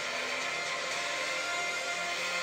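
Trailer soundtrack playing back: sustained music tones over a steady rushing noise.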